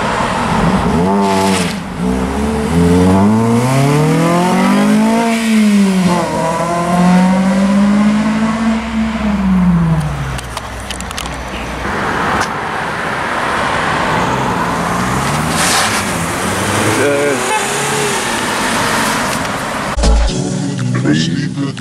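Honda Civic FN2 Type R's 2.0-litre four-cylinder VTEC engine pulling away under acceleration: its note rises steadily, dips once about five seconds in, climbs again and holds, then falls away around ten seconds in. Other road traffic follows.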